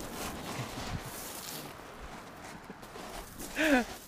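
Footsteps crunching on a shingle beach of small pebbles, an irregular run of steps.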